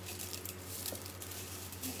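Cornflakes being crushed by hand in a glass mixing bowl: a quick run of small crackles and crunches, over a steady low hum.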